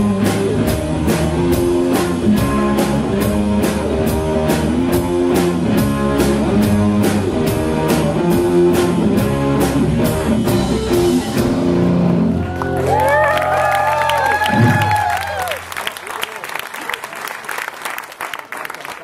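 Live rock band playing: electric guitar, bass guitar and drums over a steady beat. About twelve seconds in the drums stop and the electric guitar ends the song with a run of bent notes that slide up and down over a held low note, then applause follows near the end.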